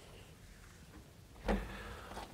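A single knock against a whiteboard with a short ringing tail, about one and a half seconds in, as the whiteboard eraser is put down. Faint room sound before it.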